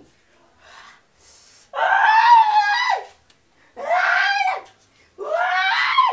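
A person screaming in three long, high cries, each lasting about a second, starting a little under two seconds in.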